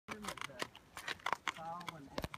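Hooves of a walking horse on a gravel road, heard as sharp, uneven clicks, with a person's voice over them near the start and again near the end.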